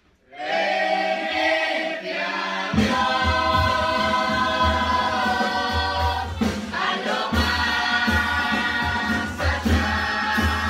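A murga chorus of children and teenagers singing together in several voices. About three seconds in, the singing fills out and a low pulsing beat comes in underneath it.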